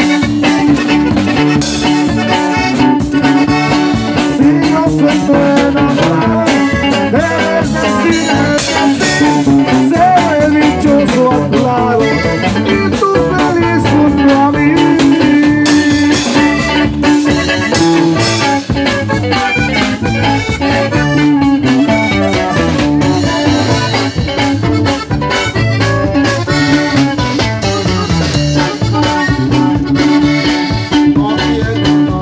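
Norteño band playing live and loud: button accordion carrying the melody over bajo sexto strumming, electric bass and a drum kit keeping a steady beat.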